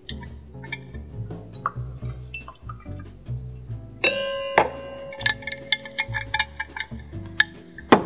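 Background music with a steady bass line. About four seconds in, a metal jigger clinks against a stainless cocktail shaker tin and rings briefly, and there are small clinks after it, with a sharper one near the end as the jigger is set down.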